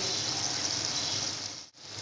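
Minced chicken keema sizzling as it fries in oil in a metal pan, a steady hiss that fades and drops out briefly near the end.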